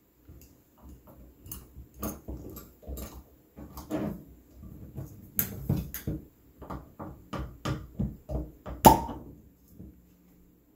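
Wing corkscrew twisted into a wine bottle's cork and levered out, with a run of short clicks from the screw and wings. The cork comes free with a sharp pop about nine seconds in.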